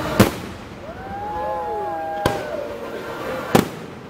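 Fireworks display: three sharp aerial shell bursts, one to two seconds apart, the first the loudest, with wavering, gliding tones sounding between the bangs.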